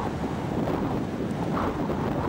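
Strong tornado winds buffeting the microphone: a steady, low-weighted rush of wind noise.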